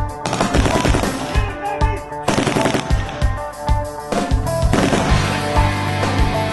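Bursts of rapid automatic rifle fire, packed mostly into the first two thirds, laid over rock music with a steady beat.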